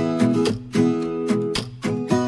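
Background music: a strummed acoustic guitar playing chords in a steady rhythm.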